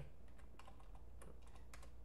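Computer keyboard being typed on: a quick, irregular string of faint key clicks as a word is entered.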